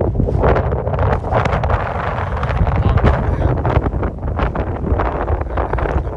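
Strong wind buffeting the phone's microphone, a loud, irregular gusting noise.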